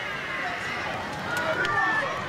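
Men's voices over open-air ambience: calls and shouts from the pitch with laughter, but no clear words.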